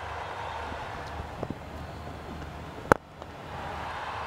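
Steady stadium background noise, then about three seconds in a single sharp crack of a cricket bat striking the ball.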